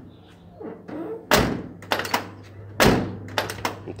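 Steel door of a 1995 VW Kombi Clipper shut twice, two solid thunks about a second and a half apart, with lighter latch and handle clicks between and after. It closes without rattling.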